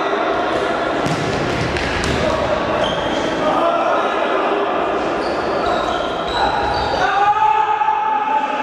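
Futsal play echoing in a large sports hall: the ball being kicked, with several sharp knocks in the first couple of seconds, shoes squeaking on the wooden court, and players shouting.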